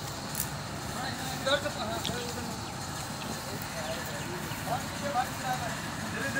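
Steady low drone of the 140-ton railway breakdown crane's diesel engine running while it holds a loaded wagon aloft during a load test, with workers' voices calling faintly now and then.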